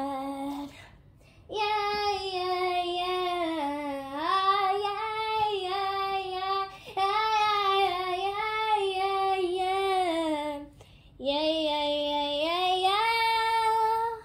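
A young girl singing solo in long drawn-out notes that glide up and down, in three phrases with short breaks between them and no clear words.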